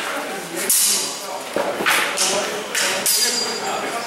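Steel practice longsword and ginunting blades clashing in a sparring exchange: about five sharp strikes, the one about three seconds in leaving a brief metallic ring. Voices murmur underneath, in a reverberant hall.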